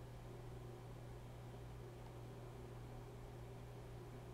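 Faint room tone: a steady low hum over soft hiss.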